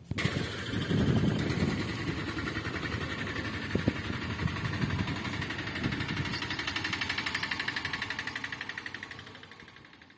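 Mahindra Arjun Ultra-1 555 DI tractor's diesel engine running with a steady, rhythmic firing beat. The sound comes in suddenly and dies away near the end.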